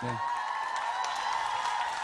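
Studio audience cheering and applauding: one long, high cheer from many voices over clapping, swelling in at the start and fading just before the end.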